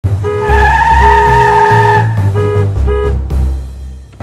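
Car tyres screeching in a braking skid for about a second and a half, stopping about two seconds in, over background music with a low bass line.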